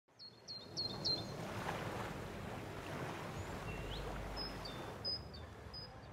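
Small birds chirping over steady outdoor background noise: four quick high chirps in the first second, a single rising note midway, then a few more short chirps near the end.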